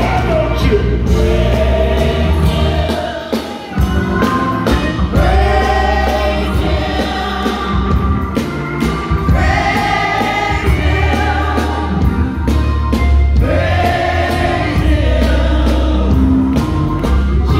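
Live gospel praise music: several voices singing long held phrases over a band of drums, bass guitar and keyboard. The music dips briefly a few seconds in.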